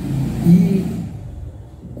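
A man's voice holding a drawn-out syllable in the first second, then trailing off, over a low steady rumble.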